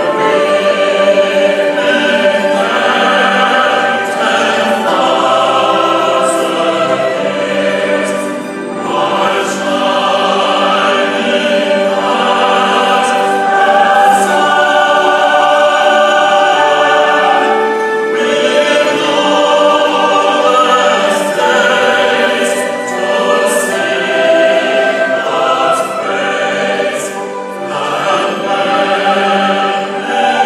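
A large choir singing in held, sustained notes, accompanied by an orchestra, live in a reverberant concert hall.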